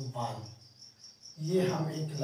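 High-pitched insect chirping, repeating evenly about five times a second, runs behind brief snatches of a man's voice at the start and near the end.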